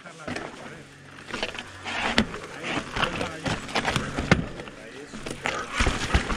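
Mountain bike tyres rolling and crunching over rocks and loose stones on a steep technical descent, with several sharp knocks and clunks as the wheels and frame strike rock, loudest about two seconds and four seconds in.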